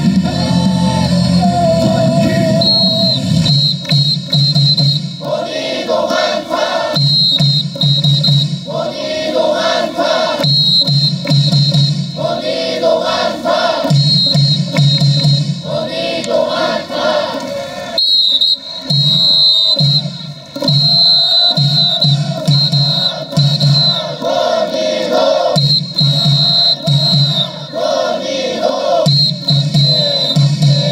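Baseball cheer song played over the stadium loudspeakers, with the crowd of fans singing along in phrases that repeat every couple of seconds.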